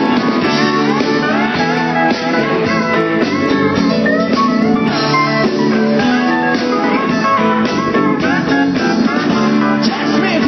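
Live country band playing a loud instrumental break led by guitar, with no singing.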